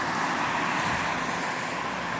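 Steady road traffic noise: cars and a van driving past, a continuous even rush of tyres and engines.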